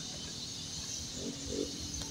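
Steady outdoor background with a high, even hiss, and a faint short hum of a voice about a second in.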